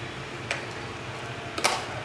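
Plastic battery-compartment cover on the back of a K9 automatic disinfectant sprayer being unclipped: a light click about half a second in, then a louder click near the end.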